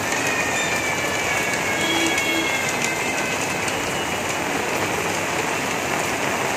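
Steady rain falling on a paved lane and shop shutters, an even hiss. Faint thin high tones sound over the first few seconds.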